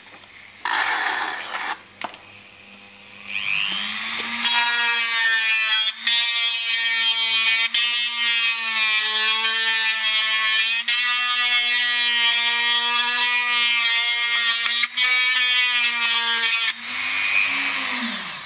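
Handheld rotary tool with a small cutting bit grinding a V-groove into polyethylene plastic. After a short burst of noise about a second in, the motor spins up and runs as a steady high whine, its pitch wavering slightly, then stops near the end.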